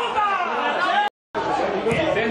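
Several voices talking at once, the chatter of spectators at a football ground, with no words standing out. It breaks off for a silent gap of about a quarter second just past a second in, then the chatter resumes.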